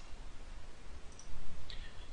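A few faint computer keyboard clicks over a low steady microphone hiss.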